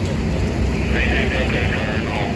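Fire engine's diesel engine running steadily as a low rumble. Indistinct voices sound in the background about a second in.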